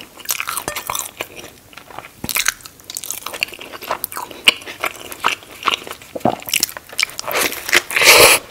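Close-miked chewing of a mouthful of Burger King Whopper cheeseburger, many small crackles and clicks, then a loud bite into the sesame bun near the end.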